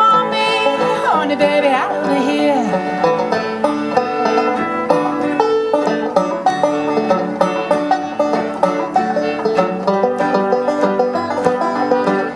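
Bluegrass band playing an instrumental break between verses on fiddle, banjo, guitar, mandolin and upright bass, with sliding notes in the first couple of seconds.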